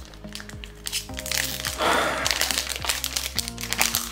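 Foil wrapper of a footy trading-card pack crinkling as it is handled and opened, thickest from about halfway through, over background music.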